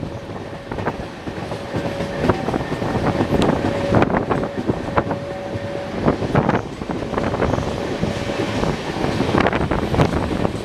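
Passenger express train running at speed, heard from an open coach window: a steady rumble and rushing wind, with irregular clicks of the wheels over rail joints. A thin steady whine runs through most of it and stops near the end.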